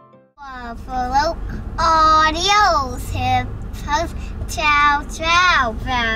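A young girl singing a rhyming goodbye chant in a high, lilting voice, in phrases that rise and fall, starting about half a second in after piano music cuts off, with a steady low car-cabin rumble underneath.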